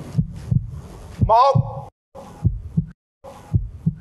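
Heartbeat sound effect used as a suspense cue: low double thumps, roughly one pair a second, under a slow spoken countdown.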